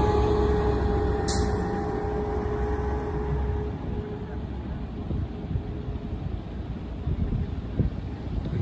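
City bus driving past: engine rumble with a steady whine that drifts slightly lower in pitch and fades out by a few seconds in. A short hiss about a second in.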